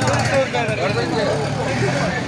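Several voices talking over one another in the background, over a steady low rumble.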